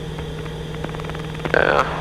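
Steady drone of a Piper PA-31 Navajo's twin piston engines and propellers in cruise, heard from inside the cockpit as an even hum. A man's voice starts near the end.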